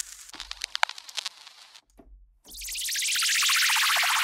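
Serum synthesizer preset imitating record-player static: scattered vinyl crackles and pops over a low hum, stopping about two seconds in. A hissing synth noise patch then swells in over about a second and holds.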